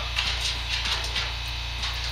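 Sheet-steel patch panel scraping and tapping lightly against a car body's lower quarter panel as it is offered up for fit: several short metal scrapes over a steady low electrical hum.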